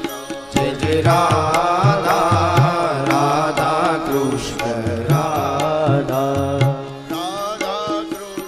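Devotional bhajan sung by a man, with harmonium and tabla accompaniment. A wavering, ornamented vocal line is held for most of the stretch over a steady drum rhythm.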